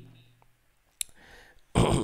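A single sharp click about a second in, in a short pause in a man's speech, which resumes near the end.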